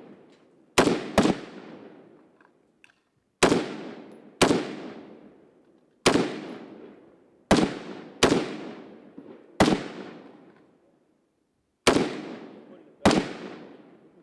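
Rifle shots on a firing range, about ten in all. They come singly and in quick pairs, each sharp crack trailing off in a long echo.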